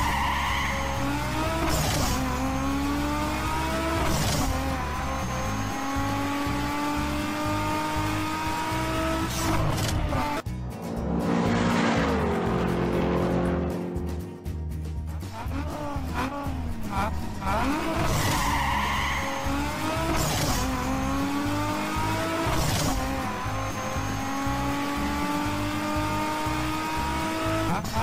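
Ford Tourneo Custom van's 2.0-litre turbodiesel engine pulling hard, its pitch climbing through each gear and dropping at every shift, heard from inside the cab. About halfway, the van is heard from outside as it drives off, its note falling away.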